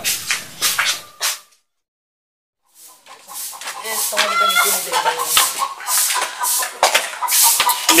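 A second of voices cut off into dead silence at an edit, then outdoor yard sound with scattered light knocks and voices.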